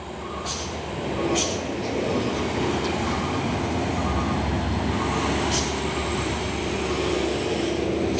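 Diesel engines of loaded cargo trucks passing close by: a steady heavy engine drone that swells about a second in as a truck comes alongside, with a few short high hisses.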